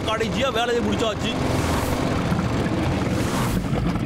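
A man's voice briefly at the start, then a cartoon water pump's motor running steadily.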